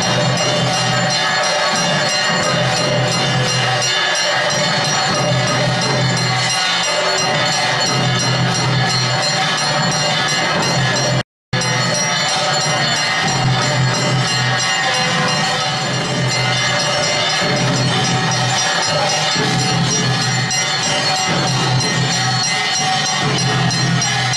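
Devotional temple music with bells ringing, as during an aarti offering. The sound cuts out completely for a split second about eleven seconds in.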